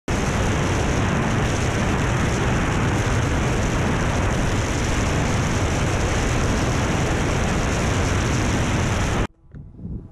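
Steady rushing of airflow and engine noise on a camera carried by a light aircraft in flight, cutting off suddenly about nine seconds in.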